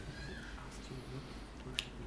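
Quiet room tone in a pause between words, with one short, sharp click near the end, like a mouth click picked up by a close handheld microphone.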